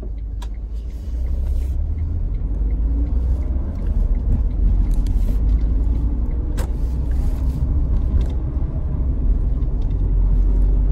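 Car cabin noise while driving: a steady low rumble of the road and of air buffeting through a partly open side window, getting louder about a second in.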